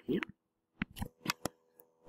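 A stylus tapping and ticking on a touchscreen as a point and its label are written onto a graph: a handful of short, sharp clicks in the second half.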